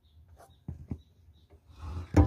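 Faint rubbing with a few short, light knocks in quick succession about half a second to a second in.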